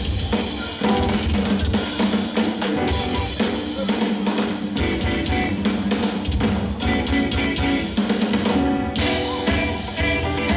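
Live rock band playing with the drum kit to the fore: busy snare, rimshot and bass-drum strokes over a steady bass line. There is a brief break in the cymbals just before the end, and then the band comes straight back in.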